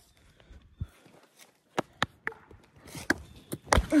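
Footsteps and scattered sharp knocks on a lawn covered with dry leaves, the loudest knock near the end.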